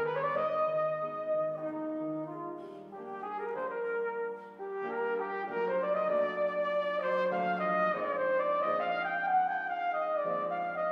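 A trumpet playing a slow song melody in long, held notes, with a piano accompanying.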